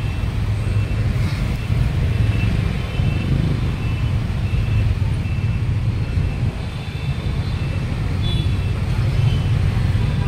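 Street traffic of cars and motorbikes: a steady low rumble throughout, with a faint short high tone repeating about twice a second.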